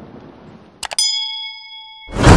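Animated subscribe-button sound effects: a quick double click, then a notification-style bell ding about a second in that rings on for about a second. A fading rushing noise from the preceding effect lies underneath at the start.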